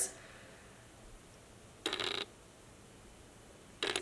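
Quiet room tone broken by one short rustling noise about two seconds in and a brief click near the end: handling noise as plastic spray bottles are picked up.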